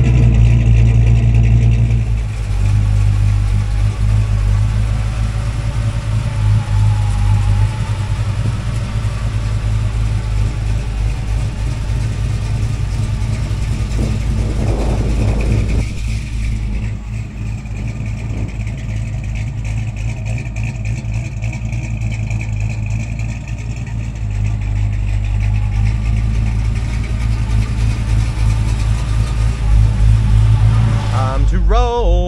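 Carbureted 350 small-block V8 with headers and Flowmaster dual exhaust idling with a steady low note. It settles from a rev in the first couple of seconds, then runs a little quieter in the second half.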